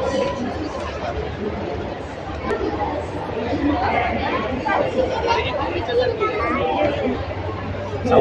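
Background chatter of several people talking, with a steady low hum underneath.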